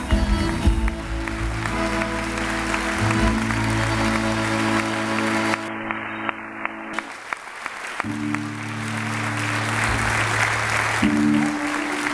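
Audience applauding over a live folk band's long held accordion chords. The music stops briefly midway, leaving separate claps, then the chords come back.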